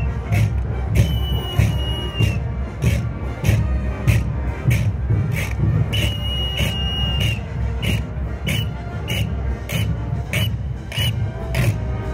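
Carnival band music with a steady beat of drums and cymbals about twice a second, and a dancer's whistle blown over it: two long blasts, then five short ones in time with the beat near the end.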